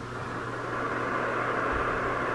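A white-noise sleep track playing from a phone's speaker: a steady, even hiss that fades in over the first half-second and then holds level.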